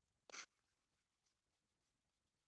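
A single brief scrape, about a quarter second in, of an emery board rubbing across the acrylic-filled neck of a plastic Barbie doll, with a couple of fainter scratches later.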